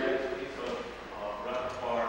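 A man's voice in phrases, in a large church.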